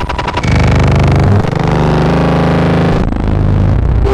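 BugBrand modular synthesizer playing a loud, dense buzzing drone with strong low tones and a fast pulsing texture under a noisy upper layer. It thickens and gets louder about half a second in, and its low end shifts near the three-second mark.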